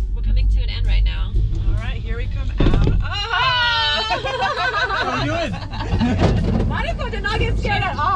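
Two women laughing and talking inside a gondola cabin, with a loud high-pitched laugh about three seconds in. Under the voices is a low rumble from the moving cabin, which eases off after about three seconds as the cabin enters the station.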